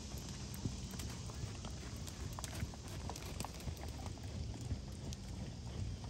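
Horses' hooves trotting on an arena's sand footing: soft, scattered hoofbeats over a low, steady background rumble.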